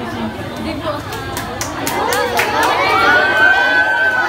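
A small crowd of young women chattering and calling out excitedly, with a few sharp hand claps in the middle. Near the end, one voice holds a long, high-pitched squeal over the others.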